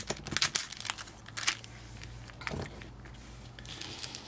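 Clear plastic packaging crinkling and crackling as it is handled, with a run of quick crackles in the first second and a half and only a few faint ones after.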